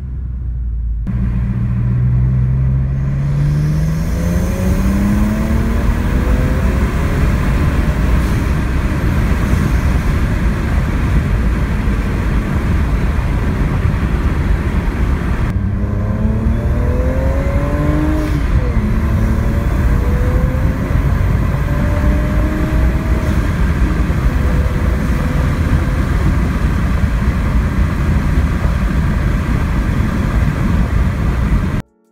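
BMW 335i's N54 twin-turbo inline-six, with catless downpipes and a Borla exhaust, pulling hard under acceleration, its note rising steadily in pitch. It dips once at an upshift past halfway and then climbs again, under loud wind rush from the open windows.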